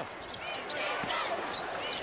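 Basketball arena game sound: a steady crowd murmur, a basketball being dribbled on the hardwood floor, and a few short high squeaks of sneakers.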